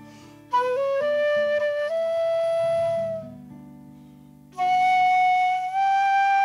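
Transverse flute playing a slow Irish air in long held notes, with a short break just after the start and a note fading away around three to four seconds in before a strong long note returns. Soft, low sustained accompaniment chords sound beneath.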